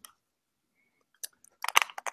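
Near silence, then a few faint clicks and, near the end, a short cluster of wet mouth clicks and lip smacks as a man opens his mouth to speak.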